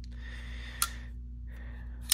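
A single short, sharp click a little under a second in, over faint breathing and a low steady hum.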